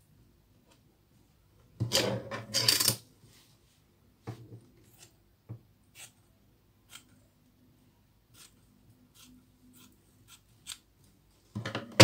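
Hands handling and smoothing a piece of fabric on a wooden tabletop: a rustle about two seconds in, then scattered light taps and clicks with faint rubbing between them.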